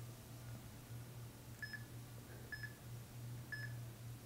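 Workout interval timer sounding three short, identical electronic beeps about a second apart as it counts down the final seconds of the interval, over a low steady hum.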